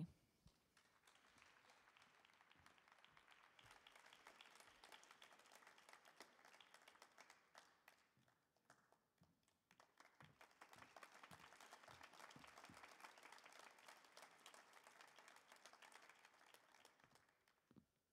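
Faint audience applause, a dense patter of many hands clapping. It thins briefly about halfway through, then picks up again and fades out near the end.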